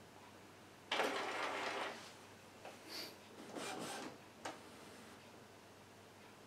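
Epson WF-2010W inkjet printer's carriage mechanism running: a motor burst of about a second, then shorter mechanical movements and a sharp click about four and a half seconds in. The printer is moving the print-head carriage to bring forward the cartridge it has flagged, here a refillable black cartridge it does not recognise.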